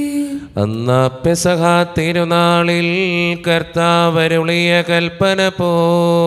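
A man's voice chanting a Malayalam liturgical prayer, sung in long held notes with short breaks between phrases.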